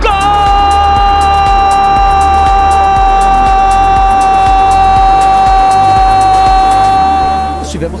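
Background electronic music: one long held synth note over a pulsing bass beat and steady hi-hat ticks, the held note cutting off shortly before the end.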